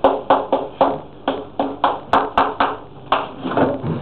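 Chalk striking and tapping on a blackboard as a line of a formula is written: about a dozen sharp taps, roughly three a second.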